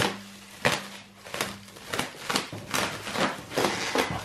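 Plastic stretch wrap crinkling and tearing as it is cut and pulled off a powder-coated motorcycle frame: an irregular run of sharp crackles and snaps.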